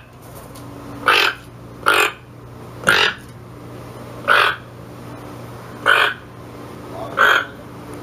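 A toucan giving a series of six short, harsh calls, spaced about a second to a second and a half apart.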